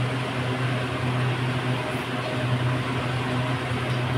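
An air cooler and a fan running together: a steady low hum with an even rush of moving air.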